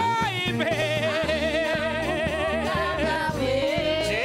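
Live church worship singing with instrumental backing: a singer holds one long note with a wide vibrato for nearly three seconds, over bass and a steady drum beat.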